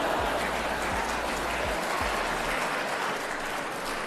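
Large theatre audience applauding, a steady dense clatter of many hands that dies down slightly near the end.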